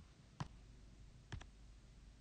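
Computer mouse clicks over near-silent room tone: one click, then a quick double click about a second later, as the slides are advanced.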